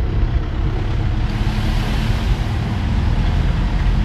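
A car driving along a wet road, heard from inside the cabin: steady engine rumble and tyre noise, with a hiss that brightens about a second in.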